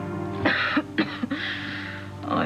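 A woman's harsh, breathy gasps and groans of pain in two bursts, about half a second and about one second in, over sustained background music.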